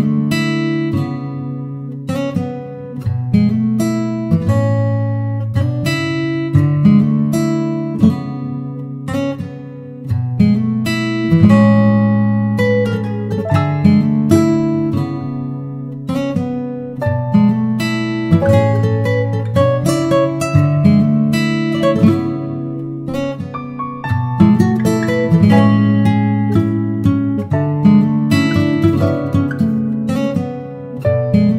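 Background music: a gentle acoustic guitar piece, plucked and strummed chords in an even rhythm.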